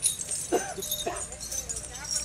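Metal leg chains on walking elephants clinking and jingling, with a short whining call in the middle.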